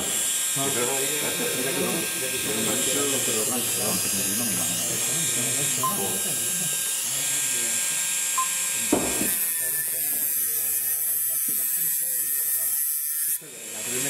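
Indistinct voices at first; from about nine seconds in, a small hobby rotary tool fitted with a cutting disc runs with a steady whine that wavers in pitch, grinding a thin metal rod down to a point. The whine drops out for a moment just before the end and comes back.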